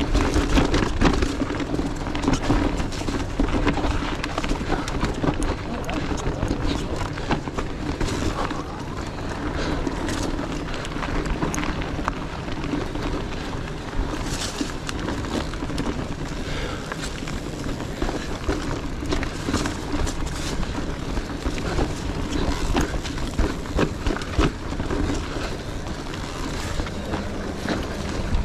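Electric mountain bike ridden over rocky, leaf-strewn singletrack: tyres crunching over leaves and stones, and the bike rattling and clicking over the rocks, with a steady low hum through most of it.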